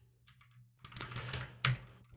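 Computer keyboard keystrokes: a few light key taps about a second in, then one sharper key press near the end.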